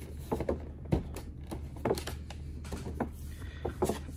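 Blister-carded action figure packages being handled and set down: scattered light clicks and knocks of card and plastic, over a steady low hum.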